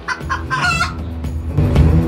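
A few short, high-pitched calls, the last one rising in pitch, within the first second, like an inserted comic animal sound effect. Background music with a beat comes back in about one and a half seconds in.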